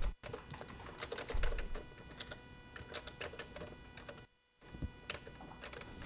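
Faint typing on a computer keyboard: irregular keystroke clicks, with a brief pause about four and a half seconds in.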